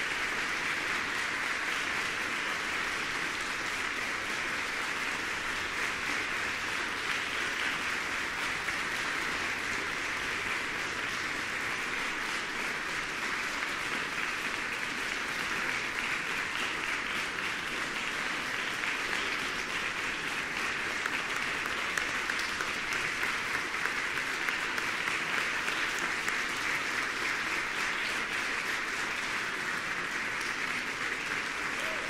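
Audience applauding steadily in a concert hall after a performance.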